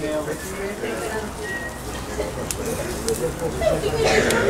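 Pork roasting on metal spits over a grill fire, sizzling, with a few sharp clicks and low background chatter.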